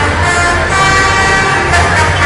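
Heavy military truck carrying a multiple rocket launcher, its engine running with a steady low drone as it drives slowly past. A steady higher, horn-like tone joins it less than a second in.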